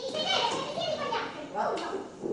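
Raised, high-pitched human voices in short bursts with no clear words, echoing in a hard-walled corridor.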